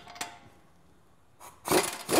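Pneumatic impact wrench tightening a brake caliper mounting bolt, starting to hammer about one and a half seconds in after a couple of light clicks as the socket goes onto the bolt.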